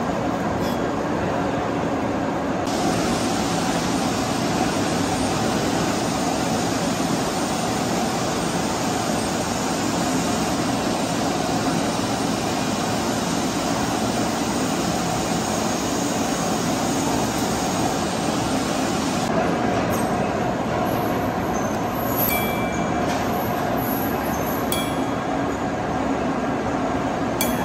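Steady din of machine-shop machinery running, a dense even noise with no pauses. A few light metallic taps come in near the end.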